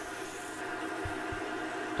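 Wood lathe running with sandpaper held against the spinning monkeypod bowl: a steady, faint hum and hiss of sanding.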